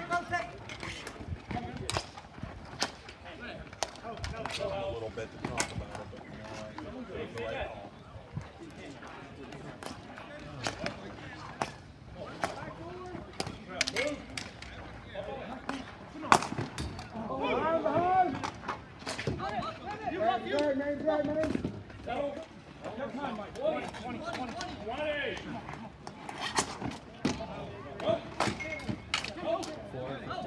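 Dek hockey play: frequent sharp clacks of sticks striking the ball and each other on the rink, the loudest about sixteen seconds in, with voices calling out, mostly in the second half.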